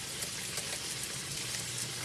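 Meatloaf frying in grease in a skillet: a steady, even sizzle with faint crackling.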